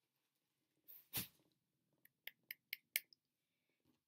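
Mostly near silence: a person's single short, noisy breath about a second in, then five or six faint, quick clicks.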